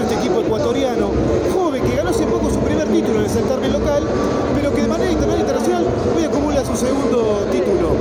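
A man talking in Spanish close to the microphone, with a babble of other voices behind him.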